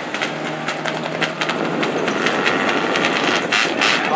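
Engines of several front-wheel-drive stock cars running at low speed together in a pace lineup: a steady engine drone with scattered crackles.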